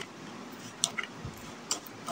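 A metal spoon stirring chopped onion, tomato and chilli in a bowl: a few light clicks against the bowl over a steady hiss.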